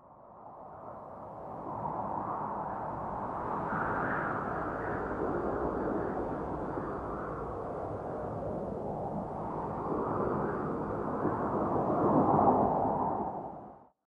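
A rushing, wind-like noise that fades in, swells a few seconds in and again louder near the end, then fades out.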